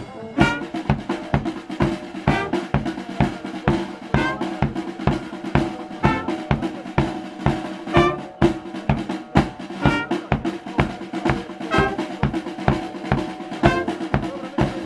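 Fire brigade brass band playing, the drums to the fore: bass drum and snare keep a steady march beat, with saxophones and brass sounding softer beneath.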